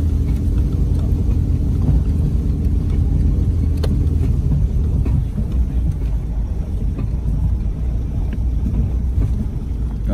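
Vehicle driving on a rough dirt track, heard from inside the cabin: a steady low engine and road rumble, with a faint hum that fades a little before halfway and a few light knocks, the clearest about four seconds in.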